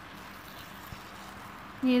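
Faint crinkling of butter paper being peeled off the base of a baked sponge cake, over a steady low hiss, with one small knock about halfway through.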